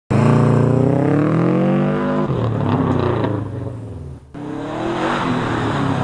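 Subaru Impreza GT's turbocharged flat-four engine running hard on a dirt road. Its pitch falls over the first two seconds, then it runs rougher with road noise, drops out briefly past four seconds, and climbs again in pitch as the car comes through the underpass.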